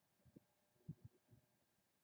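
Near silence, broken by a few faint, soft low thumps about a second in.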